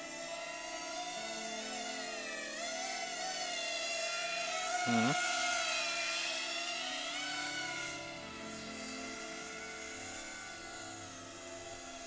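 FPV cinewhoop drone's motors whining, with several pitches that rise and fall together as the throttle changes in flight.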